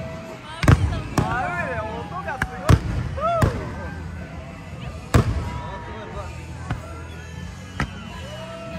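Aerial firework shells bursting overhead: about seven sharp bangs at irregular intervals. Several come close together in the first three seconds, a loud one about five seconds in, and fainter ones near the end.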